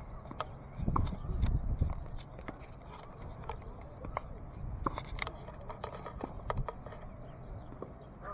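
Tennis balls being struck with a racket and bouncing on an outdoor hard court: a scattering of sharp pops and knocks at irregular intervals, with a low rumble on the microphone about a second in.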